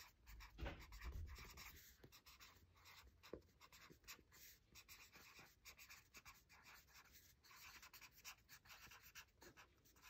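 Faint scratching of a felt-tip marker writing on a lined paper pad, in many quick short strokes.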